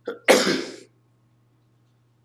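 A person coughing: a short cough, then a louder, longer one, over in under a second.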